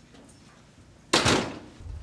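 A room door swinging shut with a single loud bang about a second in, dying away over about half a second.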